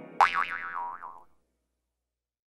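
Cartoon sound effect: a springy 'boing' with a pitch that wobbles up and down, starting suddenly and fading out about a second later.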